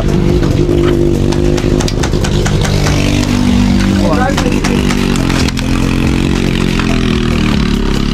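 Small go-kart engine running, its pitch shifting as it revs, with scattered sharp clicks of airsoft guns being fired.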